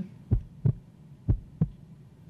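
A heartbeat sound effect: low double thumps in a lub-dub rhythm, two pairs about a second apart.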